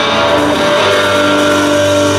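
Rock band playing live: electric guitars with drums, loud and steady, with a low note coming in about a second in.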